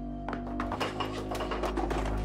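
Film score holding a low, steady drone, with a rapid, irregular clatter of clicks and knocks starting about a quarter of a second in.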